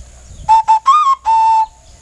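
Xutuli, the Assamese clay whistle, blown in four clear, pure notes: two short low ones, a slightly higher one, then a longer held note back at the low pitch that stops about three quarters of the way through.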